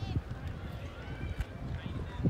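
Distant voices of a crowd, with footsteps on pavement close by.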